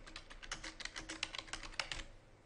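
Computer keyboard keys clicking in a quick, steady run of keystrokes as a short phrase is typed, stopping just before the end.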